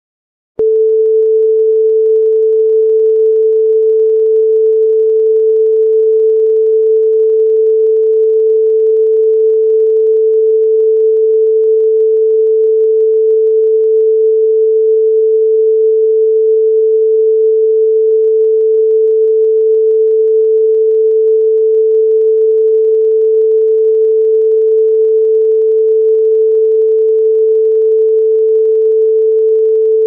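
Broadcast line-up test tone played with colour bars: one loud, unbroken pure tone at a single mid pitch, starting about half a second in and holding perfectly steady. It is the reference level signal for setting audio before a TV programme.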